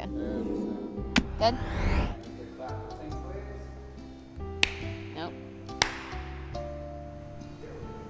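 Three sharp single hand claps a few seconds apart, used as a sync slate for the camera, over steady background music.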